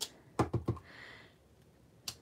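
Clear acrylic stamp block with an inked sand dollar stamp knocking down onto cardstock on a desk. A quick cluster of three or four sharp taps comes about half a second in.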